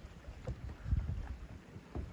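Wind buffeting the microphone outdoors: low, irregular rumbling, with a stronger gust about a second in.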